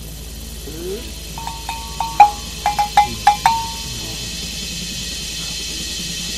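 A small metal bell struck in a quick run of about eight ringing strokes, with two close pitches alternating. The run starts about a second and a half in and stops about two seconds later, and the loudest stroke comes near its middle.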